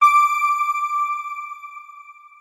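News outro sting: a single electronic chime struck once, one bright ringing tone that slowly fades away.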